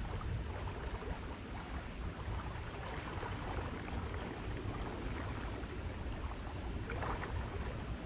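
Wind blowing over the microphone outdoors: a steady, fluttering low rumble under a soft airy hiss.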